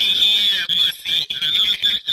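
A person's high-pitched laughter in broken bursts, over a steady high whine.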